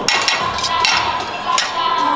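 Knife and fork clicking and scraping against a metal serving tray as a pastry is cut, several sharp clinks over restaurant background noise, with music starting to come in.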